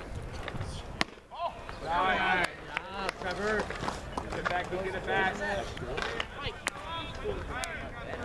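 Voices of people at a baseball field calling and shouting back and forth, with a single sharp crack about a second in.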